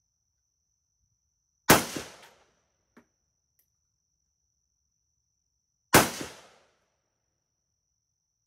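Two single shots from a Hungarian AK-63DS rifle (7.62×39 mm), fired deliberately about four seconds apart, each followed by a short echo. A faint click comes between them.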